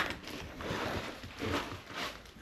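A sharp knock, then rustling and scraping as someone pushes through splintered wood, branches and debris.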